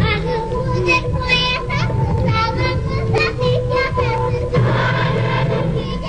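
A child singing an Azerbaijani children's folk song with instrumental accompaniment. The sound grows fuller and noisier in the last second and a half, as if more voices join.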